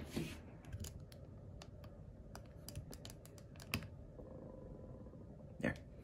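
Scattered small plastic clicks and taps as a plastic Transformers action figure is handled and shifted on a wooden tabletop.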